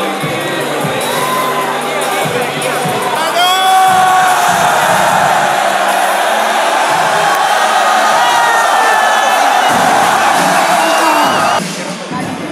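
Large crowd cheering and shouting over background music, swelling loudly about three and a half seconds in, then cutting off abruptly near the end.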